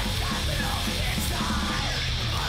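Hardcore crust punk recording: distorted guitars, bass and fast drums with cymbal crashes, under yelled vocals.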